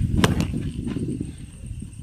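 A sharp knock about a quarter second in and a lighter one just after, over low rumbling noise that fades away.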